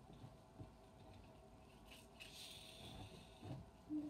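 Near silence: room tone with faint clicks and rustles of a small plastic toy being handled.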